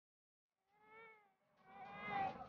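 A toddler's high-pitched wordless voice: a short call about a second in, then a second, louder one building near the end.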